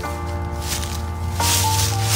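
Instrumental background music: sustained notes held and changing in steps, a new chord coming in about one and a half seconds in, along with a rising hiss.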